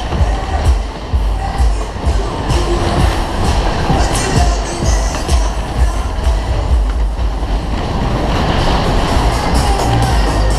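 Loud ride music playing over the rumble and clatter of a Kalbfleisch Berg-und-Talbahn's cars running round their undulating track.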